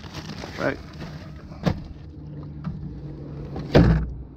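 A low steady hum with a sharp click partway through and a loud, dull thump near the end.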